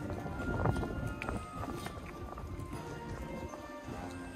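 Music with held tones, over the clicking footsteps of a crowd of people walking on stone steps and pavement, with some voices among them.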